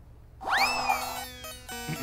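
Short comic music sting: a fast upward swoop that slowly slides back down, followed by a few held plucked-string notes. It starts suddenly about half a second in.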